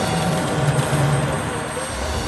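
Live electronic improvisation on square-wave synthesizers: a dense, noisy texture over a wavering low drone that thins out near the end, with a faint high steady tone above.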